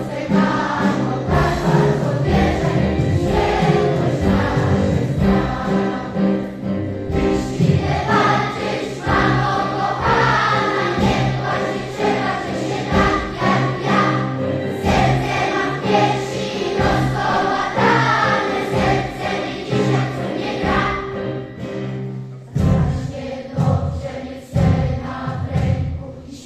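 Mixed choir of children and adults singing in sustained, many-voiced chords with keyboard accompaniment; near the end the singing breaks into shorter, separated phrases.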